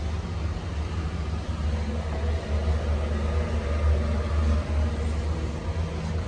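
Steady low rumble with a hiss above it, fluctuating slightly but with no distinct event.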